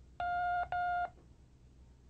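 Two short electronic beeps in quick succession, each about half a second long at the same steady pitch: the course tape's cue signal for a drill.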